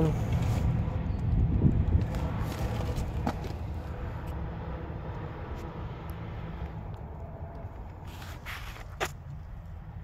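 Car engine idling with a steady low hum, under rustling and a few clicks and knocks from handling around the door and rear seat, growing slightly fainter.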